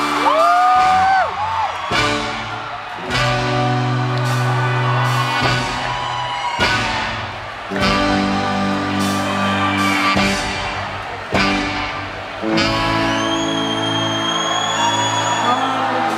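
Live band music: slow, sustained chords that change every few seconds, with a voice gliding up and down near the start and a high note held steadily near the end.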